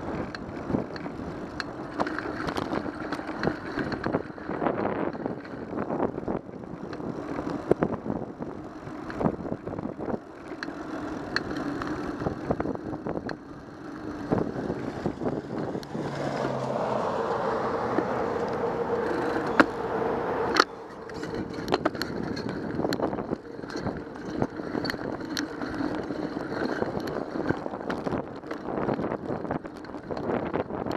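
Bicycle ride noise picked up by a camera mounted on the bike: a rough rumble from the tyres on the asphalt with frequent sharp knocks and rattles as it rides over bumps. A little past the middle, the sound of a vehicle passing through the intersection swells for a few seconds and then cuts off suddenly.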